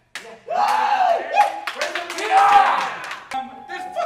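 Raised voices shouting and yelling without clear words, with sharp slaps, claps or stomps among them, starting about half a second in.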